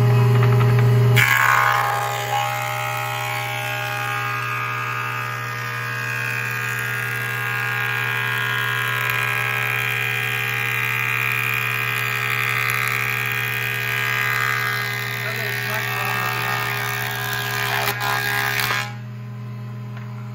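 1951 Delta 13x5 planer with its original motor humming steadily. About a second in, the cutterhead starts taking a light cut, about a sixteenth of an inch, off a mesquite board: a higher whirring, ringing cut that stops shortly before the end as the board clears the knives, leaving the motor humming.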